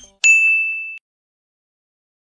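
A single bright electronic ding sound effect, one high steady tone lasting under a second, the cue that marks the end of a round as the answer is revealed.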